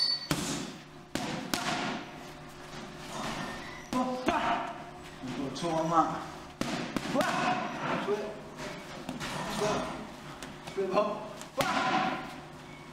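Boxing gloves punching focus mitts: a run of sharp slaps at uneven intervals, some in quick pairs, with a coach's voice calling between them.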